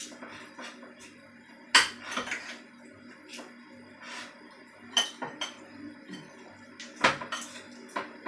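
A spoon clinking and scraping in a ceramic bowl as raw chicken pieces are stirred, in scattered knocks. The sharpest clink comes about two seconds in.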